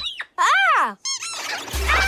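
Toy-like squeaks of the rubber ducks: a longer squeak that rises and falls in pitch, then a few short quick squeaks, with a low rumble coming in near the end.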